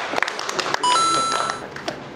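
Laughter and a few claps, then, about a second in, an electronic sound effect laid over the picture: a short beep and then a steady high chime lasting about half a second.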